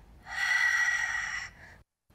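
A long, audible breath drawn through the mouth, lasting a little over a second and starting about a quarter of a second in. It is a Pilates breath taken in time with a leg change.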